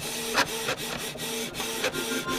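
A mechanical sound effect for an animated logo sting: a steady, printer-like hum broken into short stretches, with a click about every half second as the rendered carriage runs along its rails.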